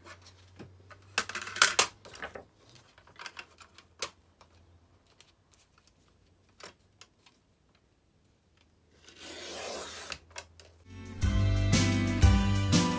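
Paper rustling and light clicks as a sheet is positioned in a small sliding paper trimmer. About nine seconds in, the trimmer's cutting head slides along its rail for about a second, slicing a strip off the paper. Background music comes in near the end.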